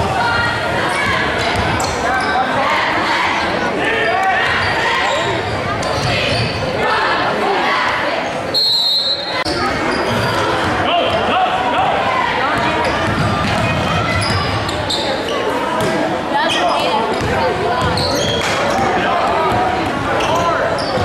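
Basketball game sounds in a large gym: a ball bouncing on the hardwood court among shouting voices from players, bench and crowd, with the hall's echo. A short, high whistle sounds about halfway through.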